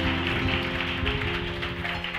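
Soft background music of held, sustained chords, slowly fading.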